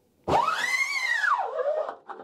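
Scoop coater squealing against the screen mesh as it is drawn up the front of the screen, laying down photo emulsion. It is one long squeal of about a second and a half that rises in pitch and then falls away.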